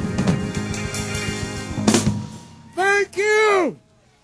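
Live blues band with drums playing the closing bars of a song and ending on a final full-band hit about two seconds in, heard dry from a soundboard recording. After the band dies away, a man's voice calls out two drawn-out syllables with sliding pitch near the end.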